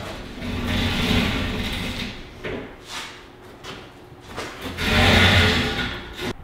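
Rope being hauled over a metal garage-door track to hoist a raccoon carcass: two long pulls, the second louder and near the end.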